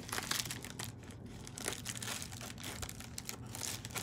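Mail packaging crinkling and rustling in the hands as it is opened, in small irregular crackles.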